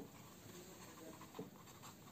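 Felt-tip pen writing on paper: faint, short scratching strokes as letters are drawn, one a little louder about one and a half seconds in.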